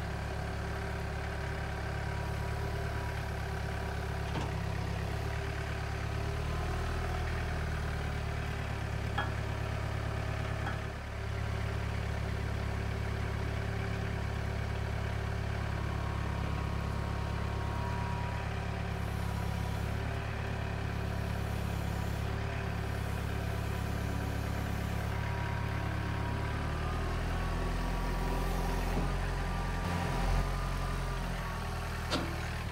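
John Deere 4044R compact tractor's four-cylinder diesel engine running steadily at low revs as its front loader lifts a box blade on a chain, with a couple of light clanks. Near the end the engine note rises a little.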